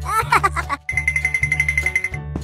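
Children's background music over a steady bass, with a brief voice-like call at the start, then a high steady tone pulsing about ten times a second for about a second, like a scene-change sound effect.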